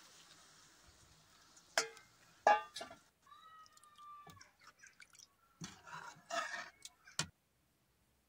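A metal ladle clinking and scraping against a steel pot of chicken cooking in gravy, over a faint sizzle that fades away. There are two sharp clinks about two seconds in, a cluster of short scrapes near the end, and then the sound cuts out abruptly.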